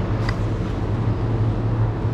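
Steady low hum of supermarket refrigerated display cases, with a faint click about a quarter second in.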